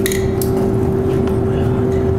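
A steady machine hum with one constant tone over a low rumble, and a couple of light clinks in the first half-second.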